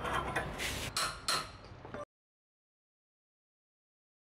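Steel tubes scraping and knocking against each other as a bicycle handlebar stem is pushed into the mini-bike frame's steering tube: several short scrapes in the first two seconds. The sound then cuts off to dead silence about two seconds in.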